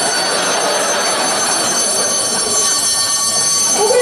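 Electric alarm bell ringing loudly and continuously, set off at a red wall-mounted alarm box.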